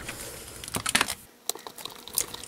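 A few light, separate clicks and taps of hands handling a clear acrylic stamping platform, bunched around the middle, after a soft rustle.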